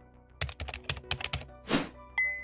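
Computer keyboard typing: about ten quick keystrokes over about a second, as a word is typed, followed by a short rushing noise near the end, over soft background music.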